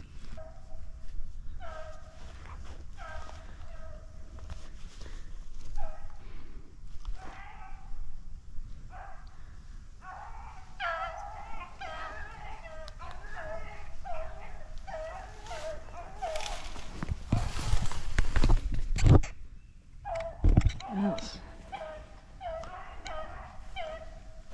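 Beagles baying on a rabbit's trail, a run of short, repeated calls that grows busier from about ten seconds in: the pack in full cry, taken for the rabbit they had been chasing. A loud rushing noise cuts in for a couple of seconds near the end.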